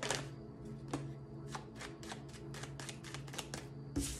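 A deck of tarot cards being shuffled by hand, with cards sliding and slapping against each other in a run of short, irregular snaps.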